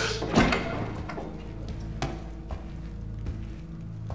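A few soft thuds of a man's footsteps as he walks in, under quiet, steady background music.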